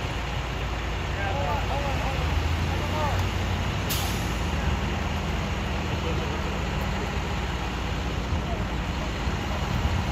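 A steady low engine drone from idling rescue equipment, with voices talking in the background and one sharp click about four seconds in.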